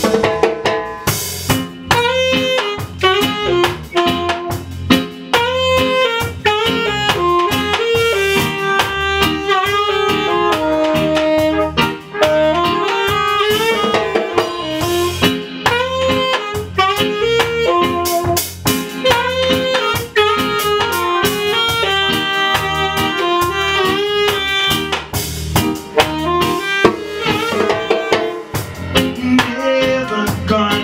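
Live band music: a saxophone plays the melody over acoustic bass guitar and a steady drum beat.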